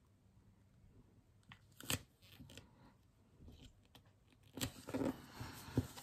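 Faint handling of sticker paper and a planner page: scattered light taps and rustles as a sticker is pressed down, with a louder patch of paper rustling about five seconds in.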